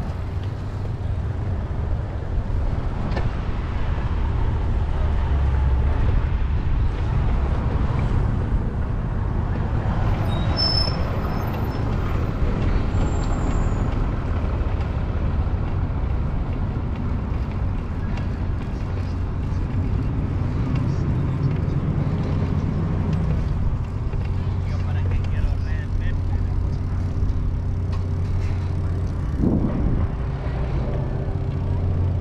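Wind rumbling on an action camera's microphone and bicycle tyres rolling on paved path while riding. A steady low hum joins in about three quarters of the way through.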